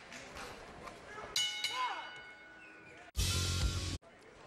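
Boxing ring bell struck once about a second and a half in, its metallic ring fading over a second or so: the bell ending the round. Near the end, a loud, full-range broadcast transition sting with heavy bass cuts off abruptly.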